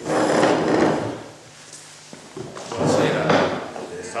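Microphone handling noise: two bursts of rubbing and knocking, about a second each, as the microphone on its table stand is gripped and moved.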